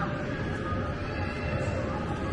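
Steady background din of an indoor amusement hall, with a dense low rumble and faint music and electronic tones over it.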